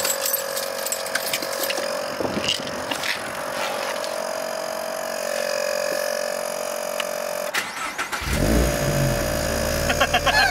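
A steady high-pitched whine with hiss. About eight seconds in, a loud low mechanical rumble starts, with a wavering whine above it.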